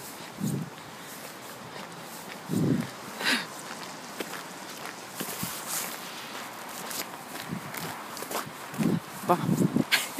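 Footsteps of a person walking on a snowy path, picked up close by a handheld phone, with the rustle of a winter jacket rubbing against it. The steps come as irregular soft crunches and clicks over a steady hiss.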